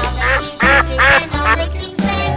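Cartoon duck-quack sound effects, several short quacks in a row, over upbeat children's background music with a steady bass line.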